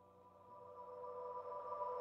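Background music fading in: a held chord of steady tones that grows steadily louder.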